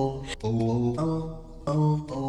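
Background music of long held notes that change pitch about every half second.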